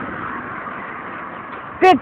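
A car passing on the road, its tyre and engine noise fading steadily as it moves away. Near the end a boy breaks in with a loud, sing-song shout.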